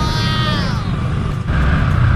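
Yamaha R15 v3's single-cylinder engine running while riding, its pitch falling over about a second as the revs drop off, over a steady low rumble of engine and wind. A louder low rumble picks up about halfway through.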